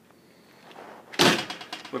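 A door in a small trailer bathroom shutting with a sudden bang about a second in, followed by a brief rattle as it settles.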